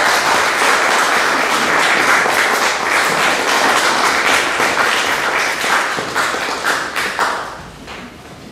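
An audience applaying, many hands clapping at once, dying away about seven seconds in.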